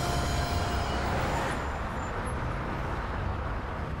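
Steady road-traffic noise: a low, even rumble of passing vehicles.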